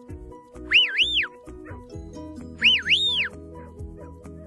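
Two shepherd's whistle commands to a working sheepdog, about two seconds apart. Each is a pair of quick high rising-and-falling notes. They sound over steady background music.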